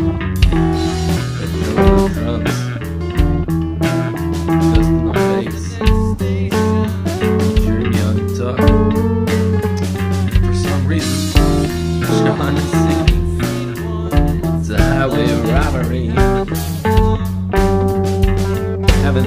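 A band playing an instrumental passage of a song: guitars and bass guitar over drums.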